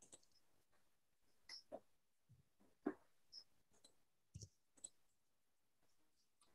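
Near silence with a few faint, scattered computer mouse clicks as a presentation file is opened.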